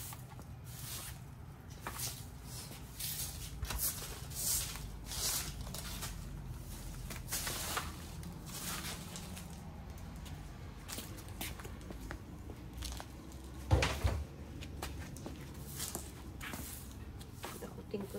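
Broom bristles sweeping dry leaves across a concrete porch: a run of short swishing strokes about once a second. There is one sharp knock about 14 seconds in.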